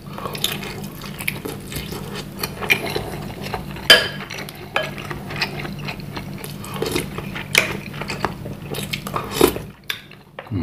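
Close-miked eating of bakso meatball soup: chewing, with a spoon clinking and scraping in a ceramic bowl and stirring through the broth. The sharpest knock comes about four seconds in.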